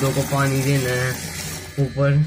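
A boy talking to the camera, with a steady hiss behind his voice that fades out about a second and a half in.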